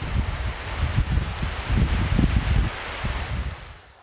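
Monsoon rain falling in gusty wind, a steady hiss with wind buffeting the microphone in low rumbling gusts. It fades out just before the end.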